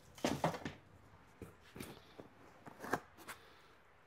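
Hands rummaging through a cardboard shipping box of packed parts: a scatter of light knocks, taps and rustles as the parts and packaging are handled.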